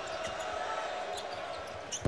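Basketball being dribbled on a hardwood court over the steady noise of a large arena crowd.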